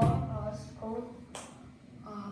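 A child's voice making short hesitant sounds over a headset microphone, with a sharp click about one and a half seconds in.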